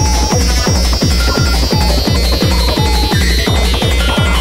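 Fast freetekno track from a vinyl DJ mix: a heavy kick drum about four times a second, each hit dropping in pitch, with short synth stabs and a high synth tone slowly falling in pitch.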